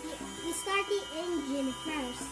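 A child's voice sounding without clear words, over faint steady tones.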